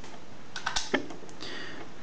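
A few light clicks and taps, mostly around the middle, as a DigiTech JamMan Solo XT looper pedal and its plugged-in jack cable are turned over in the hands.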